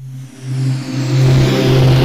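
Produced radio transition sound effect: a sudden rush with a steady low drone beneath it and a falling whoosh above, swelling to full loudness about a second in, engine-like.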